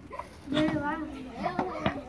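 Children's voices and background chatter from the party crowd, quieter than the amplified speech around it, with a short sharp click near the end.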